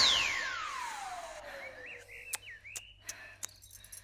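A cartoonish whistling sound effect gliding down in pitch and fading over about two seconds, then a few short bird-like chirps and scattered faint clicks.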